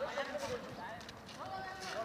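Men's distant shouts and calls across an open paved yard during a casual football game, with light irregular footfalls on the pavement.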